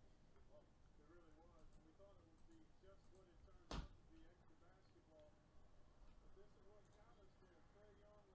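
Near silence with faint, distant voices in the background, and a single sharp click a little under four seconds in.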